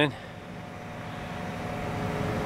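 Steady mechanical hum with a low rumble, growing slightly louder.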